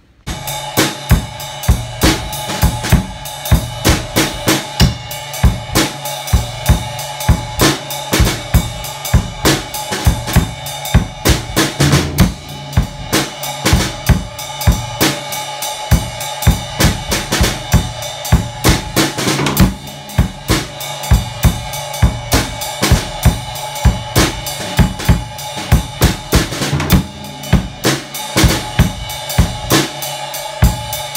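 Gretsch drum kit played with sticks: a continuous rhythmic groove on snare, bass drum and cymbals, with strong regular accents.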